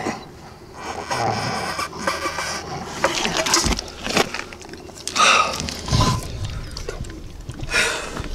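Dog panting and snuffling in irregular bursts, with rustling and scraping close to the microphone; the two loudest bursts come about five and six seconds in.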